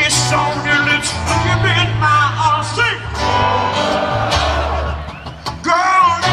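Live country band music with a male lead singer over guitar and a steady bass line, heard through the crowd from far back at an outdoor concert stage.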